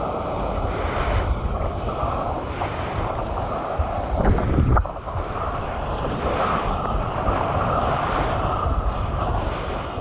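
Water rushing and spraying off a surfboard riding a wave, with wind buffeting a bite-mounted action camera's microphone. The rush swells louder about four seconds in, then briefly drops away.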